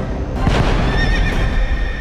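A horse neighs over loud music, in a dense rush of noise that starts about half a second in.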